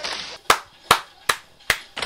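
Four sharp, evenly spaced percussive strikes, about two and a half a second, with quiet between them.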